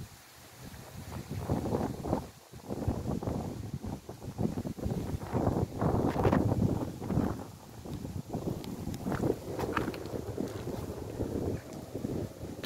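Wind buffeting the phone's microphone in gusts, a low rumble that swells about a second in, is strongest around the middle and eases a little towards the end.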